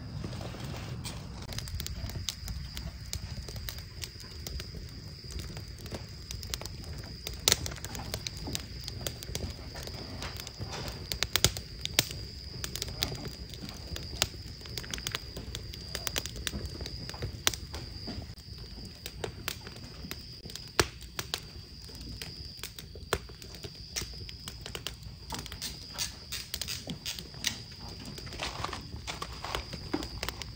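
Crackling wood fire: irregular sharp pops and snaps of burning logs over a low rumble of flames, a few pops standing out louder.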